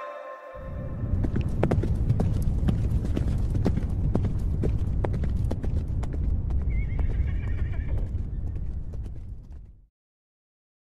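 Irregular sharp clicks over a steady low rumble, with a brief wavering high-pitched call about seven seconds in; it stops abruptly near the end.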